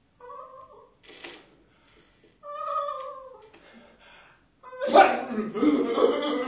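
Wordless vocal cries from a male performer: two short meow-like wails that fall in pitch, a brief breathy burst between them, then a much louder, harsher yell starting near the end.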